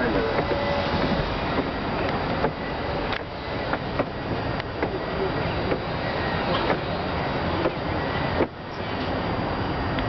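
Wind buffeting the camera microphone, a steady rumbling rush with scattered small clicks and a brief drop about eight and a half seconds in.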